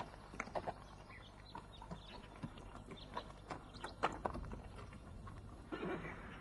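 Irregular hoof knocks and shuffles from horses standing about on hard ground, with a louder rustle near the end.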